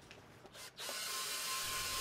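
A few faint clicks of a hand screwdriver at a hinge, then, from just under a second in, the steady run of a cordless drill boring a hole through a wooden door.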